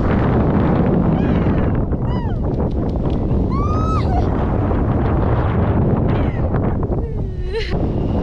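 Wind buffeting an action camera's microphone in a tandem paraglider's flight, with a person's short high-pitched excited cries rising and falling several times, the last one lower.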